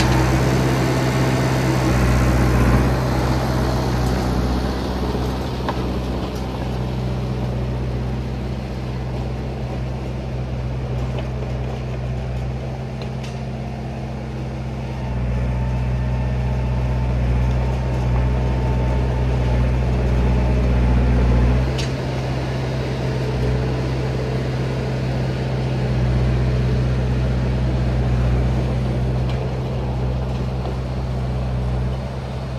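John Deere 450B crawler dozer running as it drives away, its engine a steady low drone that shifts in level about halfway through and again a few seconds later. Higher-pitched mechanical noise fades within the first few seconds as it moves off.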